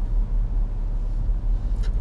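Steady low rumble of a car heard from inside its cabin, engine and road noise, in slow traffic.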